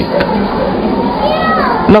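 Audience chattering, with children's voices among the crowd and one higher voice falling in pitch in the second half.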